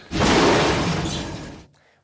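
A loud crash-like burst of noise from an action film's soundtrack, fading over about a second and a half and then cut off.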